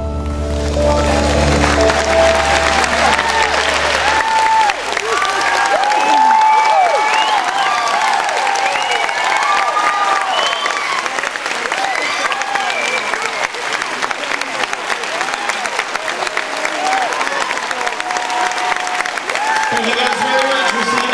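A concert audience applauding and cheering, with many whoops over steady clapping. For the first few seconds the song's final piano and bass chord is still ringing underneath, fading out by about six seconds in.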